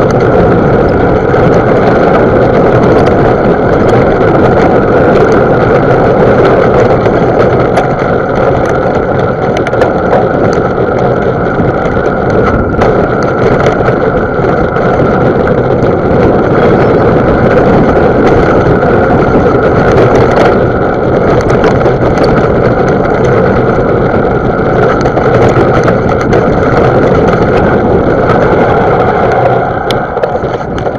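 Loud, steady rushing rumble of a mountain bike ridden along a dirt singletrack, as picked up by the rider's own camera: wind over the microphone mixed with tyre noise and small rattles over the bumps.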